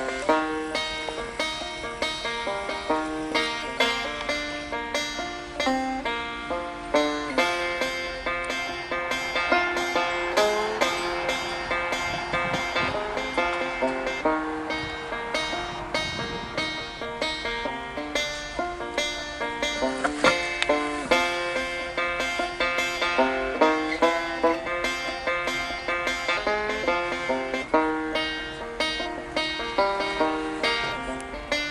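Background banjo music: a plucked banjo tune played as a steady stream of quick notes.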